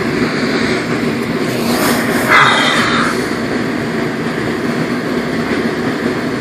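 Steady rumbling noise, even and unbroken, like a machine running, with a short breathy exhalation about two and a half seconds in.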